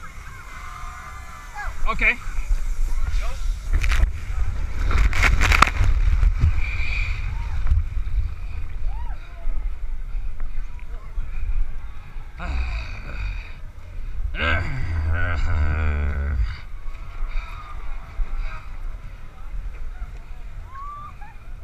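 A rider going down a giant inflatable water slide: a long rushing rumble of wind and water on the camera's microphone from about two seconds in until near sixteen seconds, with a few sharp knocks about four to six seconds in. People's voices come and go over it.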